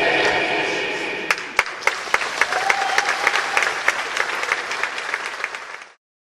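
Dance music fading out, then an audience applauding, with single claps standing out, dying away near the end.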